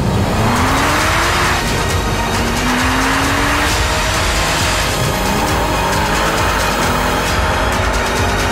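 Audi Avant wagon's engine revving hard in repeated rising pulls while its tyres squeal and skid through a burnout, with music underneath.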